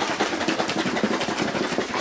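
Carton of almond milk with protein powder in it being shaken vigorously: liquid sloshing inside the carton in a rapid, steady back-and-forth rhythm.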